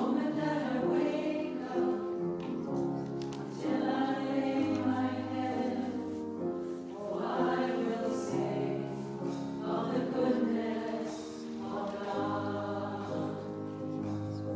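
Small church choir singing, several voices together in held chords that move from note to note.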